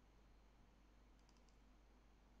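Near silence: faint room tone, with a few soft computer-mouse clicks about a second and a half in.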